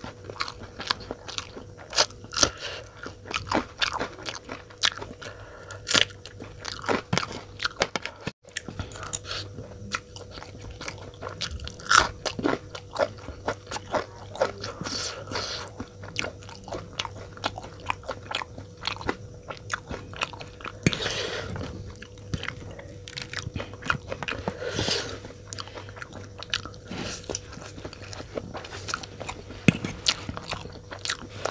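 Close-miked eating of Maggi instant noodles and raw green chillies: many sharp, crisp crunches from bites of the chilli, mixed with chewing of the noodles. A faint steady hum runs underneath, and the sound cuts out very briefly about eight seconds in.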